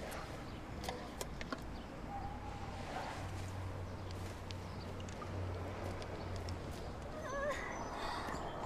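Quiet outdoor ambience with a steady low hum and a few faint clicks. A short wavering, chirping call comes near the end.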